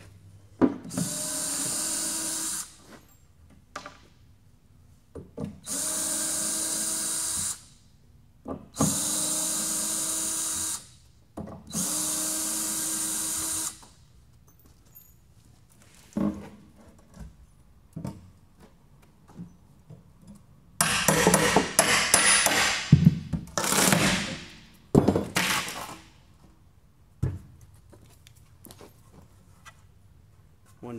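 A cordless drill runs in four bursts of about two seconds each, its motor spinning up to a steady whine each time. Later come several seconds of loud knocks and clattering.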